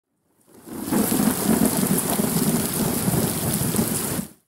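Heavy rain with a low rumble of thunder, fading in over about the first second and then holding steady.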